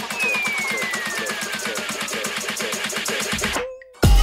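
Electronic dance music from a house/techno DJ mix: a fast, even percussion build with a falling synth sweep, cutting out to a brief gap near the end just before the beat drops back in.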